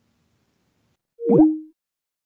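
Skype's call-ended tone: one short electronic bloop about a second and a half in, its pitches sliding and settling on two brief notes, a higher then a lower one.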